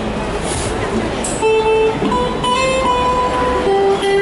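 Electric guitar through an amplifier starting a song intro, playing a slow run of single held notes from about a second and a half in, over general street background noise.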